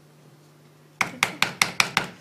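A plastic DecoArt Traditions acrylic paint bottle is shaken upside down and knocked to work the thick paint out into a container. It makes a quick series of about six sharp knocks, starting about a second in.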